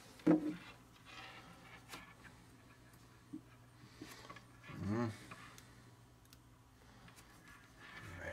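Plastic speaker shell being handled, with faint rubbing and a few light clicks of plastic parts. Two short murmured voice sounds come through, one just after the start and one about five seconds in.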